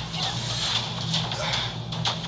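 Movie trailer audio played back in the room: a noisy run of action sound effects with a few sharp clicks, over a steady low electrical hum.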